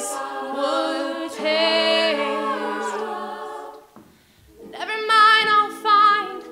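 All-female a cappella ensemble singing sustained chords in close harmony, with no clear lyrics. The chords break off briefly about four seconds in, then the group comes back in louder.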